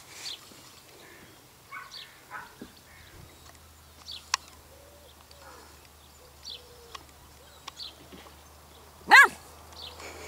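A beagle puppy gives one short, sharp yip near the end, by far the loudest sound. Before it there are only faint high chirps and a few light clicks.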